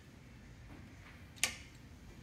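A single sharp click about one and a half seconds in, as hands handle the scale rule and drawing head of a Tecnostyl 628B drafting machine, over a quiet background.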